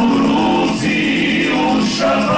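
Male vocal ensemble, a Croatian klapa, singing a cappella in multi-part harmony, holding sustained chords.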